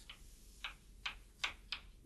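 Chalk writing on a chalkboard: about five sharp, unevenly spaced taps and clicks of the chalk striking the board.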